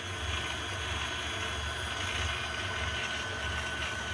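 KitchenAid stand mixer running at a steady speed, its flat beater churning butter, sugar, egg, milk and vanilla in the steel bowl: an even motor hum with a faint high whine.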